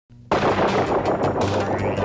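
Rapid, irregular run of sharp clicks, about six a second, starting abruptly over a low steady hum.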